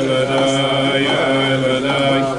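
A group of men singing a wordless Hasidic niggun together in long, held notes.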